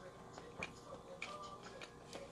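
Faint clicks and ticks of someone chewing a bite of tortilla with the mouth closed, scattered through the quiet.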